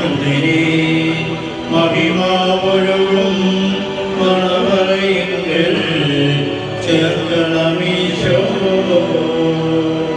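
Male voices chanting a funeral prayer of the liturgy, in long held notes that step to a new pitch every second or two.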